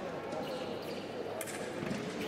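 Voices talking in a large sports hall, with a couple of sharp knocks in the second half.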